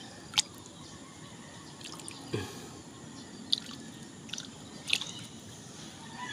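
Small splashes and drips of hydroponic nutrient solution as a handheld digital meter is moved through a shallow tub: a few short, sharp wet sounds, spaced about a second or more apart, over a faint steady background.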